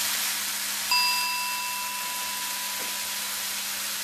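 Pork and kimchi sizzling steadily in a frying pan. About a second in, a single metallic ding rings out and fades over a second or so.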